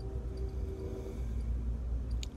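Steady low rumble of a moving passenger train heard from inside the car, with a thin steady tone that fades out a little after a second in.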